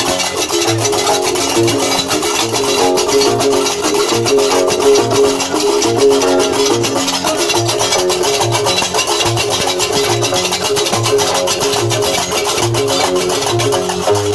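Algerian diwan (Gnawa) music: the metallic clatter of karkabou (qraqeb) iron castanets keeping a steady rhythm over a plucked guembri bass line, with a low note recurring about every two-thirds of a second.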